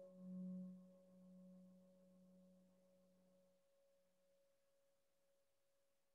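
A meditation bell fading away after a single strike, rung to open the sitting meditation: a low tone that wavers slowly as it dies out over about four seconds, with a fainter, higher tone lingering after it.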